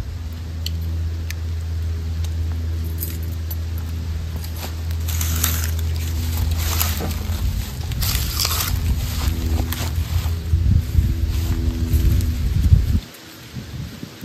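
A ferro rod is scraped with the back of a pocketknife blade, three short rasping strikes about five to nine seconds in, to throw sparks onto dry kudzu leaves. A steady low rumble runs underneath and stops suddenly near the end.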